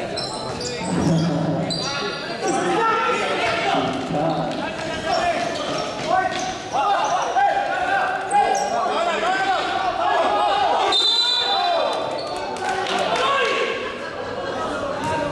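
A basketball bouncing on the court during play, with the shouts of players and onlookers echoing in a large covered hall.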